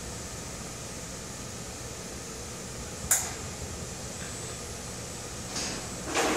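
Steady hum and hiss of the robot cell's surroundings, with one sharp click about three seconds in.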